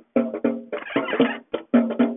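Homemade toy drum, a paper-wrapped cylindrical container, beaten on its lid with two sticks tipped with thermocol balls: a quick, uneven run of strikes, about four or five a second, each leaving a short pitched ring.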